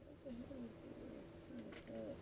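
Soft, low cooing of a pigeon: four short notes in two pairs, about a second apart. A few light clicks of cards being handled come just before the last coo.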